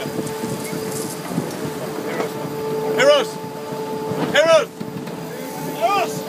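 A steady hum and the rush of wind and water on the deck of a racing sailing yacht under way, broken by three short shouted calls from the crew.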